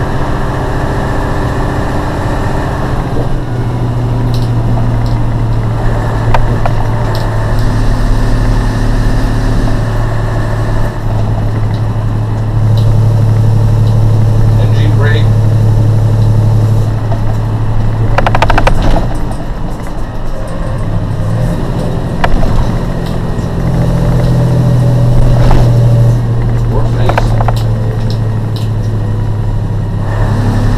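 Diesel engine of a Mercedes cab-over fire truck, heard from inside the cab while driving, with road noise. The engine note holds steady for a few seconds at a time, then steps up or down in pitch as the load or gear changes. There are several short rattles or knocks in the second half.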